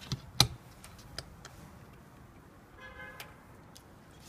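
Sharp clicks and knocks of rubber-sleeved rod antennas being handled and screwed onto the connectors of a finned metal jammer case, the loudest knock about half a second in and a few lighter taps after. A short pitched sound comes near three seconds.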